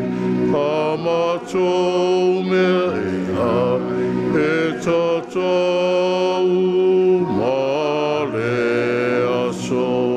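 Slow, chant-like hymn singing: voices hold long notes and slide from one pitch to the next.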